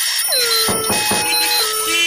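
Electronic jingle of synthesized tones: short repeated high beeps over held notes, with pitch glides sliding downward, alarm- or ringtone-like.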